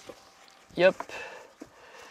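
Quiet handling at a van's sliding door: a few faint clicks from hands working the fastenings of a mosquito net, with a short spoken "yep" about a second in.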